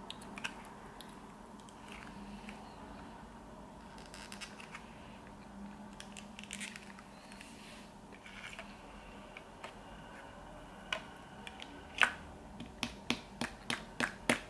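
Thin clear plastic blister mould being flexed and pressed by hand to pop out soft modelling-paste figures, with faint crinkles and clicks. The last few seconds bring a run of sharper plastic clicks and taps, the loudest about twelve seconds in, over a low steady background hum.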